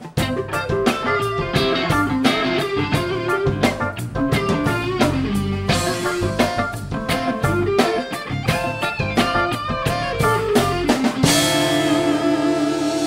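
Live rock band playing an instrumental section of a neo-reggae tune, with electric guitar over drum kit, bass and keyboards. Near the end the drumbeat stops and a held chord rings on.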